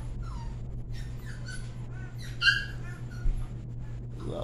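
A few short, high-pitched animal calls, the loudest about two and a half seconds in, over a steady low hum.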